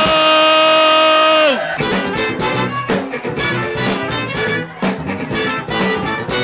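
Live funk-rock band with saxophone and trumpet: the horns hold one long note that drops away about one and a half seconds in. The drums, bass, guitar and horns then kick into the tune together.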